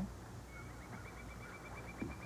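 Quiet pause with a steady low hum, and a faint thin high steady tone that comes in about half a second in and holds.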